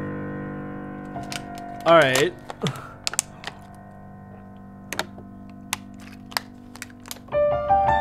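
A sustained piano chord fades away. A short wavering vocal sound comes about two seconds in, then scattered clicks of typing on a computer keyboard follow while the piano is silent. Piano notes start again near the end.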